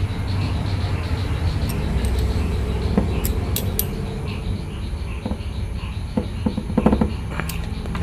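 A hex key tightening a screw inside an aluminium hammer head, giving a few faint, small metallic clicks, over a steady low background rumble.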